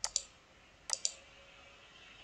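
Computer mouse clicks, quiet: two quick pairs, one at the start and one about a second in.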